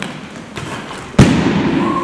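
A person's body hitting the floor mats as he is thrown, one loud thud a little over a second in, with a few lighter taps before it.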